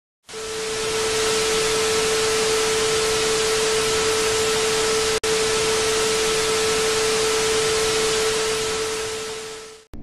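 Television static hiss with a steady mid-pitched tone held under it, cutting out for an instant about halfway through and fading away just before the end.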